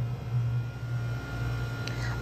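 Steady low hum with a faint hiss: background room tone, with a small click near the end.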